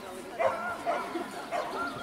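A small dog yipping and whining in short, wavering pitched calls, once about half a second in and again near the end.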